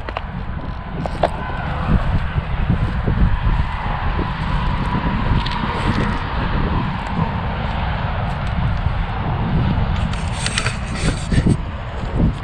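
Wind rumbling steadily on a body-worn camera's microphone, with footsteps crunching through dry grass and brush and a burst of crackling rustle near the end.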